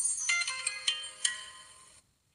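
Short chime melody: about five bell-like notes struck one after another, each ringing and fading, the whole growing quieter and then cut off suddenly at the end.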